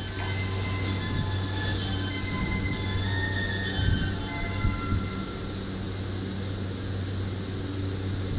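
JR East E235 series electric train standing at a platform, its equipment giving a steady low hum. Faint high tones step down in pitch over the first few seconds, and a few short thumps come about halfway through.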